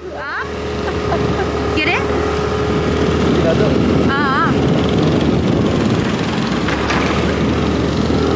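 Engine and road noise of a moving vehicle, a steady running sound that comes in at the start and swells over the first second, with people's voices over it.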